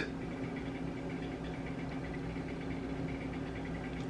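Steady low hum with a faint hiss, the background noise of a small room, unchanging throughout.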